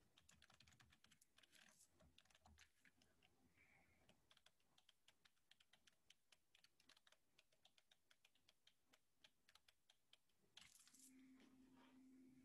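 Faint typing on a computer keyboard: a quick, irregular run of key clicks. Near the end there is a brief rush of noise, then a low steady hum.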